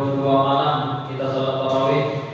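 A man's voice chanting a melodic recitation, holding long drawn-out notes in two phrases with a short break about a second in.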